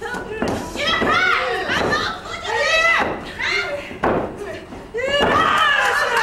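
High-pitched women's voices shouting in short, repeated calls during a pro-wrestling submission hold, with a sharp thud about four seconds in.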